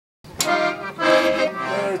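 Paolo Soprani diatonic button accordion sounding three held chords in a row, the first starting sharply about a third of a second in.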